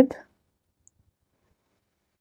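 A single faint mouse click about a second in, otherwise near silence; the end of a spoken word trails off at the start.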